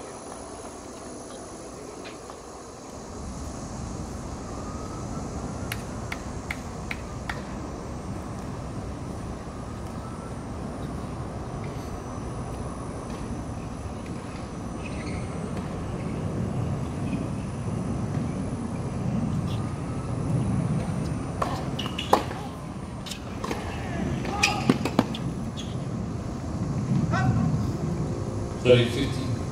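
Steady low outdoor rumble around an outdoor tennis court, swelling in the second half, with faint distant voices. Several sharp racket-on-ball hits come about three-quarters of the way through during a rally.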